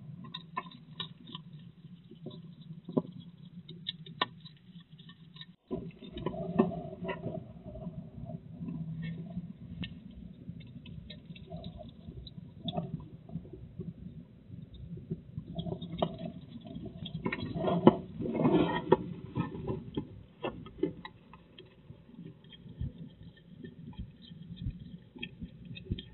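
European hedgehog eating dry food pellets in a wooden feeding box: a run of irregular crunching and chewing clicks, with a short break about six seconds in. The crunching is densest and loudest around two-thirds of the way through.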